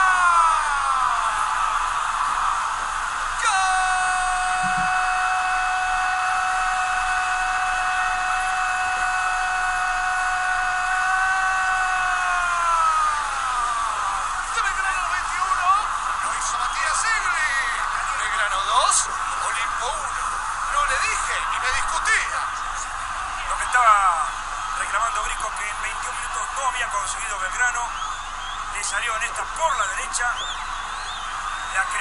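A football commentator's long drawn-out goal cry: one held note of about nine seconds that slides down and dies away, over a cheering stadium crowd. After it come shorter excited shouts over the crowd noise.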